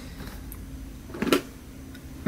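A single short knock from a clear plastic storage box being handled, about a second and a half in, over a low steady room hum.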